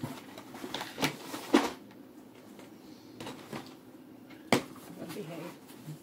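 Handling noises from a plastic foldable reacher and its cardboard-and-plastic packaging on a table: a few sharp clicks and knocks, spread out, with light rustling between them.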